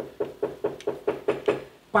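A wayang kulit dalang's cempala knocker strikes the wooden puppet chest and the hanging kepyak metal plates in a quick run of about nine strikes, each with a short metallic ring. This is the knocked signal (dhodhogan/keprakan) that cues the gamelan and the puppet movement.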